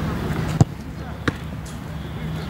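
Two sharp thuds of a football being struck, about half a second and just over a second in; the first is louder.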